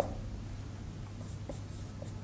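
Marker pen writing on a whiteboard, faint, with a short click near the start.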